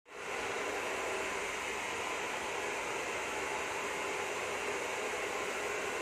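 Handheld hair dryer blowing steadily as the bob is styled, an even hiss with a faint hum.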